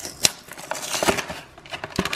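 Cardboard box being opened and handled, with a sharp click about a quarter second in. Then comes a rustle and crinkle of packaging as a plastic-wrapped frozen quiche is slid out.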